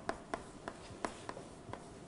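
Writing on a lecture board: a quick run of short, sharp taps and scratches, about three a second.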